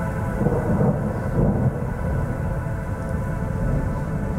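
Low rolling thunder rumble, swelling in the first second and a half, over a sustained synthesizer drone of held tones.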